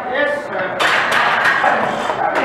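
Several people's voices shouting over one another during a heavy barbell squat, louder and denser from just under a second in.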